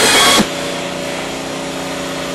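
Loud sound cuts off abruptly about half a second in, leaving a steady motor hum with several constant tones: car-wash machinery running.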